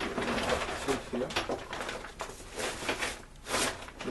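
Plastic tarp rustling and crinkling, with cardboard scraping against it, as a cardboard sheet is slid into the side of a tarp carrying case. The rustle comes in uneven surges.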